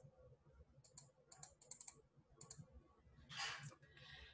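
Near silence with a few faint, quick clicks, spread through the first half, and a short soft rush of noise near the end.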